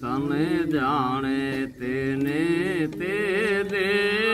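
Unaccompanied male singing of a Gujarati devotional hymn to Ganapati, in long held notes that waver and turn in pitch, with a brief breath pause a little under two seconds in.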